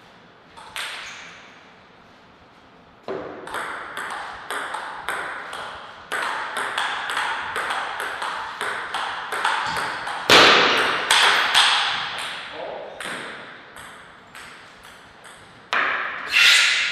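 A table tennis rally: the plastic ball clicks off the paddles and table in a quick, fairly even series from about three seconds in. It stops shortly before the end, when the point is won. A single bounce comes just before the first second.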